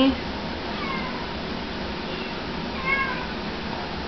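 Domestic cat meowing: a few faint, short calls, one about a second in and a clearer one about three seconds in.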